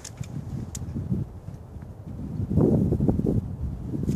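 Wind buffeting the microphone in uneven low gusts, loudest in the second half, with rustling and a few light clicks from climbing gear being handled.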